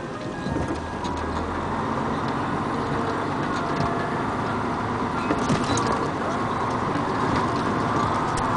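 Vehicle running slowly along a rough, muddy dirt road, heard from inside the cab: a steady engine and tyre noise, with a few short rattles about five seconds in.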